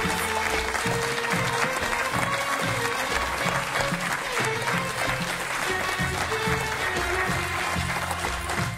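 Studio audience applauding over walk-on music with a steady beat, as a talk-show guest is brought on.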